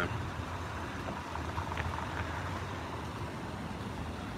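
Steady low rumble of city traffic, with no single vehicle standing out.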